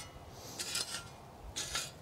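Steel spade blade scraping into soil and turf, skimming off a thin surface layer of loose soil: two short scrapes about a second apart.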